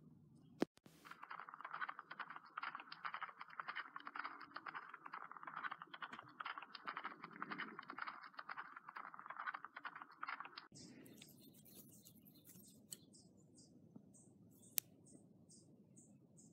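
Dense, rapid rustling and clicking of grass brushing close to the microphone for about ten seconds, ending abruptly. After that come faint high chirps repeating about twice a second.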